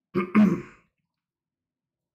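A man clearing his throat with two quick, loud rasps in the first second, then silence.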